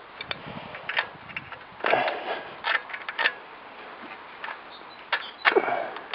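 Scattered clicks and brief rustling handling noises as a spark plug cap is pushed onto a moped engine's spark plug; the engine is not running.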